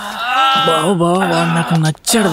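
A man's voice drawn out in a long, wavering, bleat-like note, held steady for about a second before it breaks off near the end.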